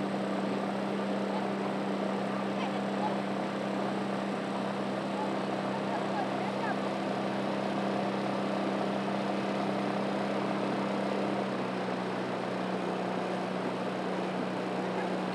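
Steady drone of a motorboat engine running at constant speed, easing off slightly near the end.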